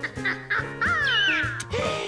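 Cartoon background music with a bouncy, repeating bass line, joined in the second half by a few squeaky, falling cries from the cartoon monkey.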